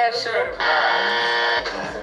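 A steady buzzer-like tone, one flat unwavering pitch, lasting about a second. It starts about half a second in, with talk just before and after it.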